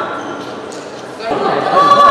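Voices calling out in a large, echoing sports hall between badminton rallies. A quieter first second, then a loud call that starts about a second and a half in and is held.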